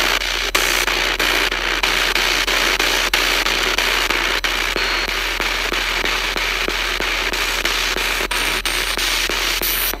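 Spirit box radio sweeping the AM band in reverse: a steady hiss of static broken by frequent clicks as it jumps from station to station.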